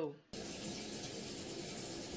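A steady, even rushing hiss in a small tiled bathroom, starting abruptly about a third of a second in.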